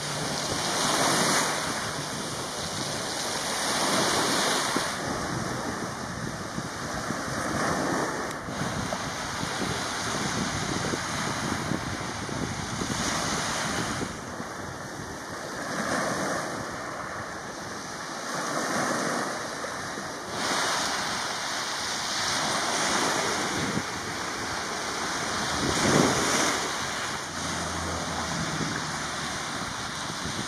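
Sea surf breaking and washing up a pebble shore, swelling and ebbing every few seconds.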